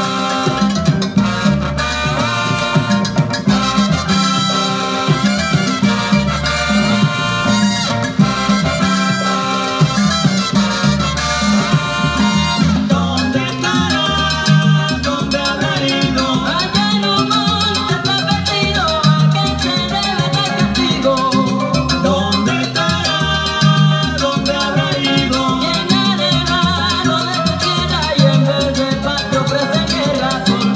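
A 1972 salsa orchestra recording playing from a vinyl LP: an instrumental stretch with horn lines over steady bass and percussion, and no vocals.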